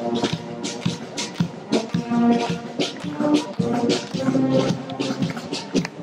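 Marching brass band playing a march while on the move: tubas, flugelhorns and trumpets carrying the tune over a steady drum beat about twice a second.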